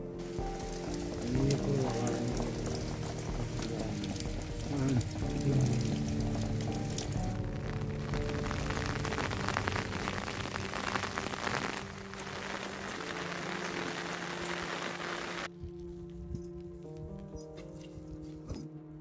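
Steady rain falling, a dense hiss, under background music with sustained notes; the rain sound cuts off suddenly about fifteen seconds in, leaving only the music.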